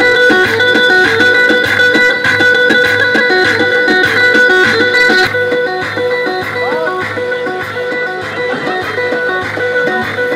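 Turkish dance music (halay) played on an electronic keyboard through loudspeakers: a quick melody over a steady low beat, a little quieter in the second half.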